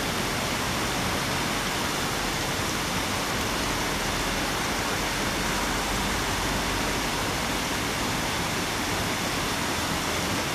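Water fountain jets spraying and splashing in a steady, even rush.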